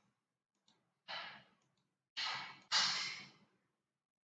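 Breathing close to the microphone: a short breath about a second in, then two longer, sigh-like breaths in quick succession a little after two seconds.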